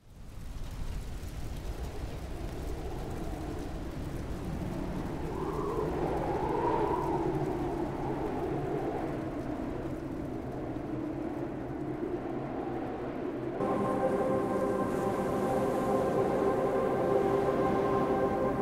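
Cinematic intro soundtrack: a low rumbling drone with slowly gliding tones, then about two-thirds through a steady sustained chord comes in abruptly and holds.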